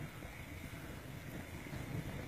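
Faint, steady rushing noise with no distinct events.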